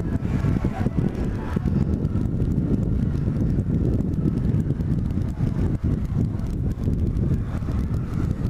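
Wind noise on the microphone over the Bajaj Platino 100 motorcycle's small single-cylinder four-stroke engine, ridden at low speed. The sound is a steady low rumble.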